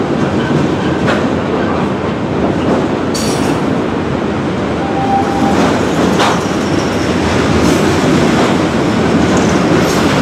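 Freight train cars rolling past: a steady rumble of steel wheels on rail, with a few sharp clanks along the way.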